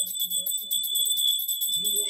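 Brass puja hand bell rung continuously, a high steady ringing with a fast even flutter from rapid shaking.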